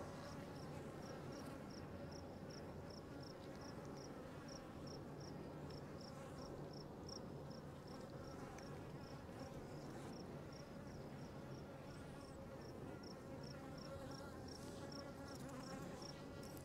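Faint, steady hum of many honeybees flying as they forage, with a high, even insect chirp repeating about three times a second.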